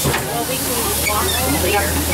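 Compressed air hissing steadily from the shuttle bus's air system, starting suddenly, over the low hum of its engine as it sits at a stop.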